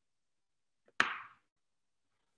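A single short, sharp sound, like a click or knock, about a second in, fading out within half a second; otherwise silence.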